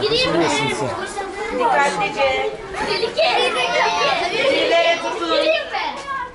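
A group of children talking and calling out over one another without a break.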